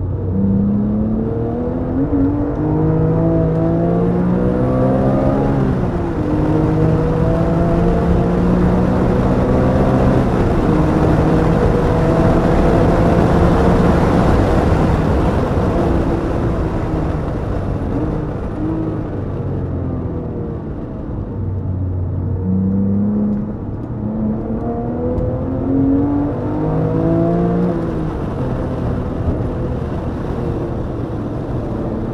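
Porsche GT3's flat-six engine heard from on board, pulling hard through the gears with its pitch climbing in steps at each upshift. Around the middle a broad rush of wind and road noise at top speed takes over. The engine note then falls away under braking and climbs again through the lower gears near the end.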